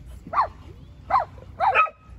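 Dog barking: four short barks, the last two in quick succession.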